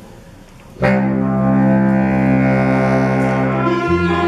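Swing orchestra of clarinets and saxophones coming in together on a loud held chord about a second in, with the chord changing just before the end.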